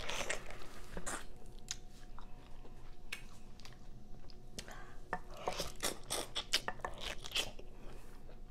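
Close-miked biting and chewing of a whole peeled pineapple, eaten face-down without hands: a run of crunchy bites into the stringy flesh, coming thicker and louder about five seconds in.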